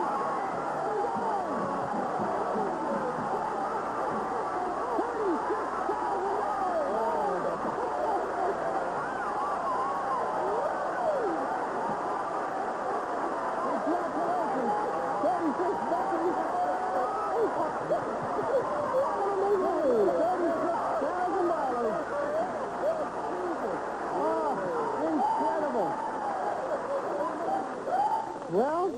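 Game-show studio audience and contestants cheering and screaming at a jackpot win, many voices overlapping in one long unbroken din.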